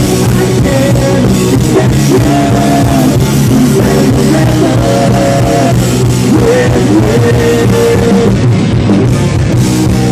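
A live rock band playing loudly: electric guitars, bass and a drum kit.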